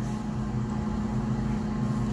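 Microwave oven running with a steady low hum while a bag of microwave popcorn heats inside; the kernels have not begun to pop.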